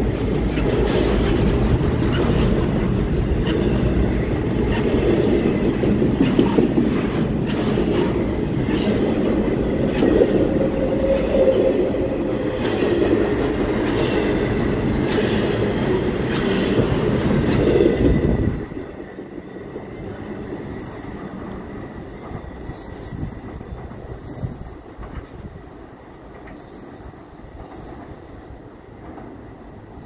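Double-stack intermodal freight train rolling past close by: a loud, steady rumble of wheels on rail with scattered clicks and a thin, faint squeal. The last car goes by about 18 seconds in, and the sound drops off sharply to a faint, receding rumble.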